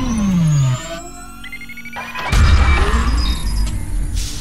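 Cinematic electronic logo-intro sound design. A loud falling sweep drops to a low tone and cuts off under a second in. Stepped electronic beeps follow, then a deep hit about two seconds in, trailed by short rising and falling chirps.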